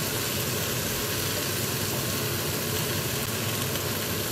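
Steady sizzling hiss of spiced pumpkin pieces frying in a saucepan on a gas hob.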